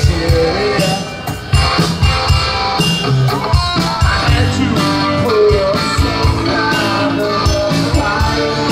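Live rock band playing, with a steady drum-kit beat under electric bass and guitar.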